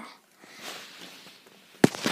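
A plastic toy lightsaber being handled: a soft rustle, then a single sharp clack near the end as it is pushed into its stand, followed by light rattling.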